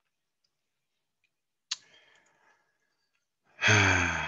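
A man's sharp intake of breath a little before halfway, then a long, loud voiced sigh starting near the end.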